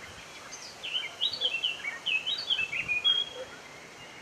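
A bird singing one quick phrase of short, sliding high notes, starting about half a second in and stopping a little after three seconds, over a steady background hiss.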